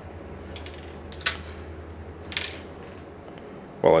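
Small hard-plastic action-figure parts being handled and fitted, giving a few short clicks about half a second in, one just after a second and another near two and a half seconds, over a steady low hum.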